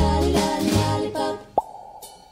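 Close-harmony singing with a low backing that breaks off about a second and a half in, followed by a single finger-in-cheek mouth pop, a short sharp plop rising in pitch.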